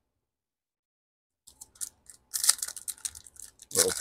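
Foil wrapper of a Topps Chrome trading-card pack crinkling and tearing open, starting about one and a half seconds in.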